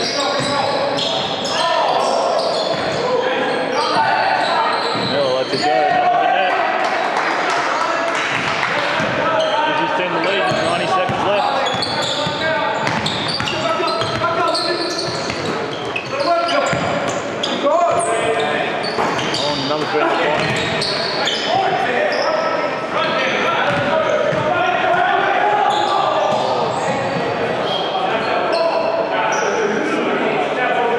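Basketball bouncing on a hardwood gym floor during play, with voices calling out, echoing in a large hall.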